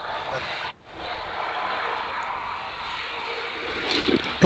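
Steady rushing background noise carried over a video call's audio, cutting out briefly under a second in.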